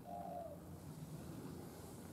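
A faint bird call: one short, low pitched note at the very start, over a steady low hum.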